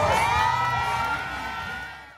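Crowd cheering and shouting, many voices calling out at once, fading away towards the end.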